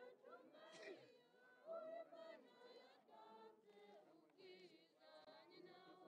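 Faint singing by a group of voices, with several voices holding and gliding notes together.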